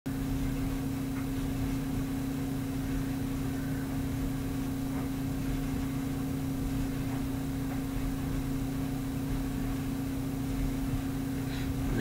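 A steady low hum with one constant tone, unchanging throughout.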